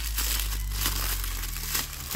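Printed wrapping paper crinkling and rustling as it is unwrapped by hand.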